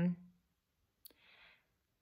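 A woman's drawn-out "um" trailing off, then, about a second in, a single faint click and a soft breath; otherwise very quiet.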